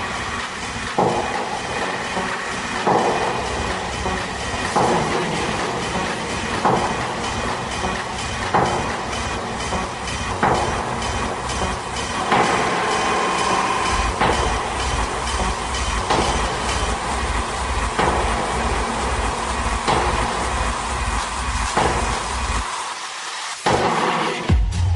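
Techno DJ mix: a driving track with a dense, noisy, clattering percussive texture on a steady beat of about two hits a second. A deep kick drum comes in strongly about halfway through, and the track drops out for a moment near the end.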